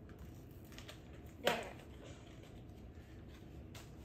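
Faint clicks and rustles of a small cardboard toy box being handled and opened, with a brief spoken "there" about a second and a half in.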